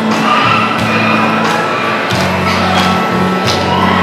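Keyboard music with low held notes that shift every second or so under a melody, and sharp percussive strikes at a steady beat.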